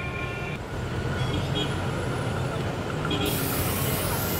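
A motor vehicle's engine running steadily with a low rumble; a bright hiss joins about three seconds in.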